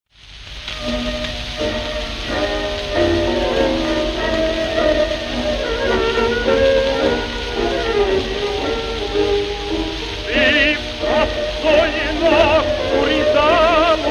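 Hungarian Gypsy band (cigányzenekar) playing the instrumental opening of the song, with a lead violin line that wavers with vibrato from about ten seconds in. It is an old gramophone recording, narrow and dull at the top, with steady surface hiss and crackle under the music.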